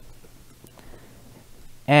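Faint computer keyboard typing, a few soft clicks over a low steady hum, with a man's voice starting just before the end.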